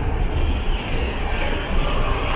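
Steady low rumble with an even hiss of railway station noise, no distinct events. It comes from beside a standing container freight train.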